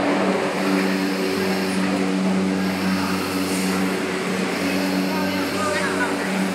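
A steady, low machine hum with a noisy wash over it, unchanging throughout. Faint voices come in near the end.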